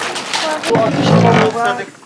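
Voices talking, with one loud, low, drawn-out call in the middle that lasts under a second.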